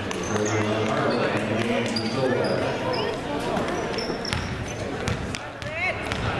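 A basketball bouncing on a hardwood gym floor as a player dribbles, a few separate bounces, over the chatter and calls of spectators and players.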